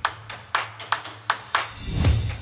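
Electronic intro music in a short breakdown: the bass drum drops out, and sharp clap-like hits sound about every 0.4 s over a faint low bass tone. A rising swoosh builds near the end and leads into the return of the beat.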